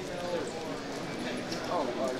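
Indistinct chatter of many people in a large convention hall, with light knocks and clacks mixed in.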